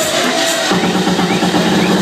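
Electronic dance music played loud over a club sound system, recorded through a phone's microphone. For the first moment the deep bass is cut and a held synth tone sits in the middle range. Under a second in, the bass and kick come back in.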